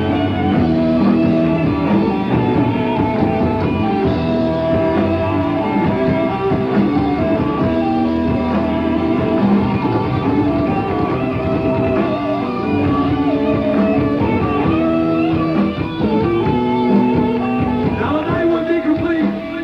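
Live rock band playing: electric guitar over bass and drums, with long held guitar notes.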